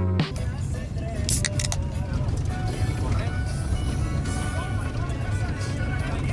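Inside a moving car's cabin: a steady low engine and road rumble with music and voices over it. A short electronic music passage cuts off just after the start.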